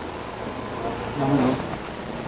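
Faint, indistinct voices in the background over a low steady rumble.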